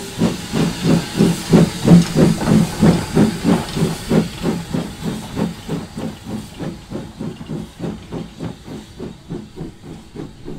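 Peckett 0-6-0 saddle tank steam locomotive working, its exhaust beats coming about three or four a second over a hiss of steam. The beats are loudest in the first few seconds and fade toward the end.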